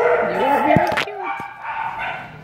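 A pit bull-type dog whining and vocalising in a wavering, up-and-down pitch, with a few sharp clicks near the middle.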